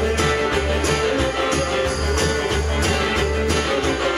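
Live band playing an instrumental passage: mandolin and upright bass over drums, with a steady beat.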